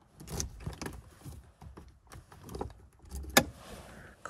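Ignition keys jangling and clicking as they are worked in a newly installed ignition lock tumbler, with scattered small clicks and one sharp click about three and a half seconds in.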